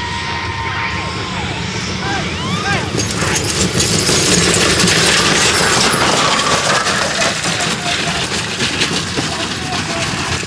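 Hoofbeats of two chuckwagon teams galloping and the wooden wagons rattling as they race close past, a dense clatter that builds and is loudest about four to six seconds in, then draws away.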